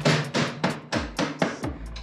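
Rubber mallet tapping the motorcycle's rear axle through the wheel hub and swingarm in a quick, even series of knocks, about five a second, growing quieter toward the end as the axle is driven home.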